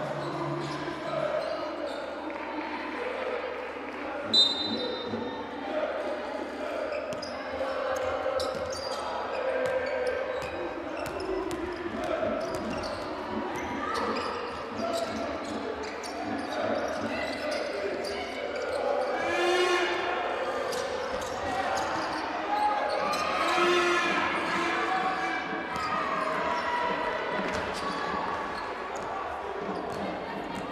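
A basketball dribbled on a hardwood court during play, repeated bounces echoing in a large sports hall, with voices around the court. A short, shrill high tone about four seconds in is the loudest moment.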